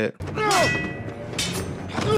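Sound from a TV sword-fight scene: a man's cry with falling pitch early on, then a sharp knock about halfway through, over a low steady rumble.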